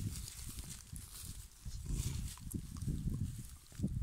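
A black-and-tan dog rolling and shifting in dry grass while a hand rubs it, giving low, uneven rustling and shuffling close to the microphone.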